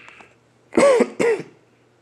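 A man clearing his throat: two short, loud coughing bursts about half a second apart, about a second in.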